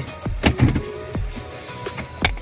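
Plastic clicks and a short scrape as the clip-held cover of a car's AC cabin filter housing is pressed free and pulled out of the plastic HVAC box. There are a couple of sharp clicks about half a second in and another just after a second.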